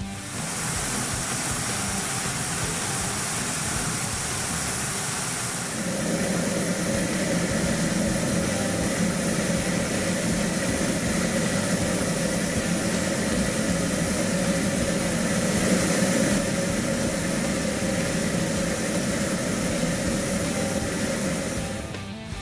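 Filter test stand's blower drawing air through a cold air intake while fine test dust is fed into the intake's inlet for ISO 5011 efficiency testing: a steady rush of air. About six seconds in, the sound shifts and a lower, steady hum joins it.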